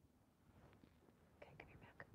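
Faint whispered speech, starting about half a second in.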